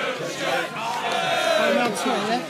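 A close crowd of football fans shouting and chanting over each other, with one voice holding a long call in the second half.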